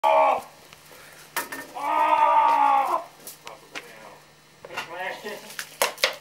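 A person's voice: a short call at the start, then one long held yell lasting about a second, with a few sharp clicks around it and a word or two near the end.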